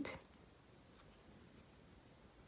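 Near silence: faint handling of a beading needle and thread being worked through glass Delica beads, with one soft click about a second in.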